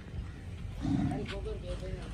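A short, deep bellow from a bovine farm animal about a second in, the loudest sound here.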